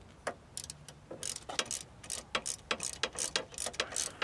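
Socket ratchet clicking in quick back-and-forth strokes, about four clicks a second, as it drives a Torx screw into a metal frame.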